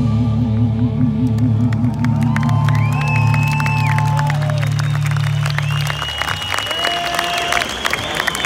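Live rock band holding a final sustained chord that rings on and cuts off about six seconds in, while the festival crowd cheers and applauds.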